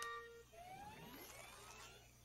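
Cartoon computer-and-printer sound effect: a steady electronic tone that stops about half a second in, then faint rising whistling glides as a photo prints out.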